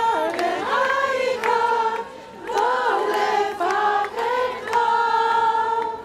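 A group of women singing a prayer melody together in unison, in phrases of held notes, with a short breath pause about two seconds in and a long held note near the end.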